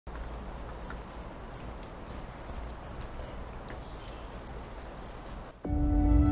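A bird chirping: short, high chirps at irregular intervals, one to three a second, over a low steady rumble. Soft music with held tones comes in near the end.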